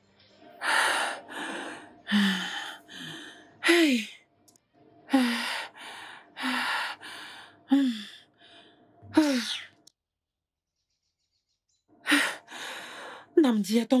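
A person's breathy sighs and gasps, each a rush of breath ending in a short falling 'huh', repeated about every second and a half. They stop for about two seconds, then start again near the end.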